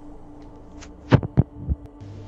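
Three dull thumps in quick succession, about a quarter second apart, over a steady low hum.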